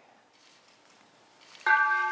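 Hanging ceremonial peace bell struck once with a wooden mallet about one and a half seconds in, then ringing on with a steady tone of several pitches held together; before the strike the room is nearly quiet. This is the first of three ceremonial rings.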